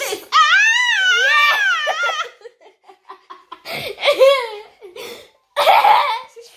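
A person's high, wavering squeal of laughter lasting about two seconds, followed by shorter bursts of laughter about four seconds in and again near the end.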